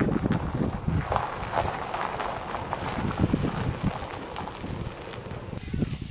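Wind buffeting the camera microphone outdoors: an uneven rumble that slowly eases toward the end.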